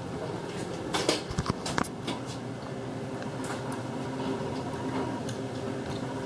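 Kone passenger elevator getting under way after a floor button is pressed: a steady hum inside the car, with several clicks and knocks in the first two seconds.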